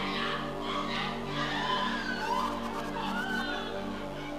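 Background music: held keyboard chords played softly and steadily, with faint voices underneath.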